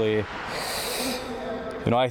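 A man's voice finishes a sentence, then about a second and a half without words that holds a soft, airy hiss, and a man's voice starts speaking again near the end.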